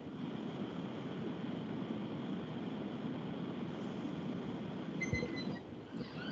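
Steady background hiss and rumble from an open microphone on a video call, with no one speaking. A soft thump comes about five seconds in, together with a brief, faint high tone.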